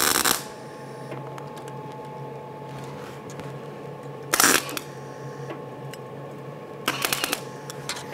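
MIG welder arc crackling in short bursts on thin sheet steel butted with a gap: one burst ends just after the start, then two more short bursts about four and seven seconds in, with a steady low hum between them. Welding across the unbacked gap, the arc blows right through the sheet metal.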